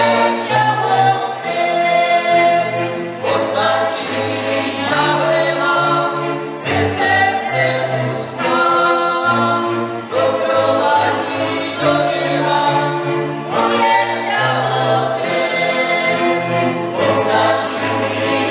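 Polish highlander (góralska) folk band: group singing in several voices over fiddles and a cello-sized bowed bass playing a rhythmic bass line.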